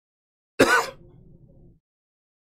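A man clearing his throat once, a short sharp rasp about half a second in, trailing into faint low noise that stops abruptly.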